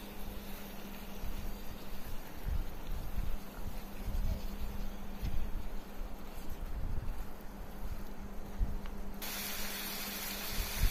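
Raw chicken pieces with masala sizzling in a non-stick pan while a spatula stirs and turns them, giving a steady hiss with soft low bumps from the stirring. The hiss turns brighter near the end.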